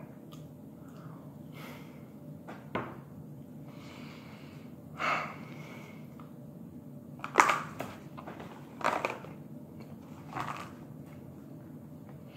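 Eating sounds: a handful of short smacks and clicks while a last bite is chewed, over a steady low room hum.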